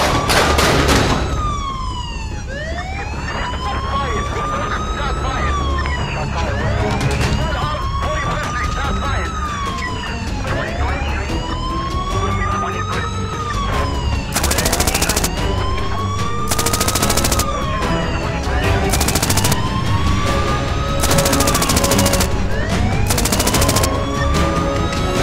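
Police-style wailing siren, one slow rise and fall about every two seconds, laid over a remixed soundtrack with a steady beat. In the second half come several short bursts of rapid clicking.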